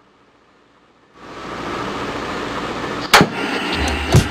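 A steady hiss of noise swells in about a second in, broken by one sharp crack about three seconds in, as a segment intro sound effect; music with a beat starts near the end.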